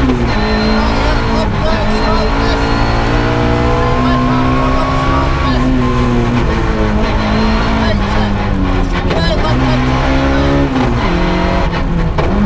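Ford Puma 1.6 rally car's four-cylinder engine at full effort, heard from inside the cabin. The revs climb and drop again and again, over loud road and tyre noise.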